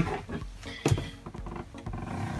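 A 12 V diaphragm water pump running with a low, rough drone as it repressurises the water system, with a single knock about a second in.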